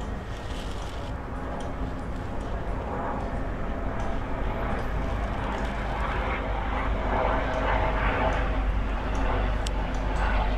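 A steady low rumble that grows gradually louder over several seconds.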